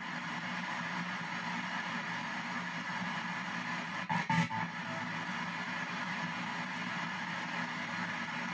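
P-SB7 ghost box sweeping the FM band in reverse: steady radio static chopped up as it steps from station to station every 200 ms. About four seconds in comes a brief louder snatch of broadcast sound, which the uploader takes for the words 'I'm evil'.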